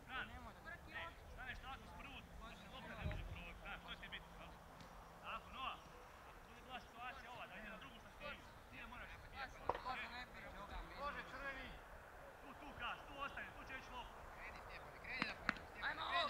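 Faint, distant voices calling and shouting across an outdoor football pitch, with a low thump about three seconds in and louder calls near the end.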